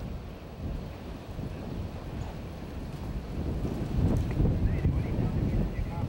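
Wind rumbling on an outdoor microphone, stronger from about halfway through.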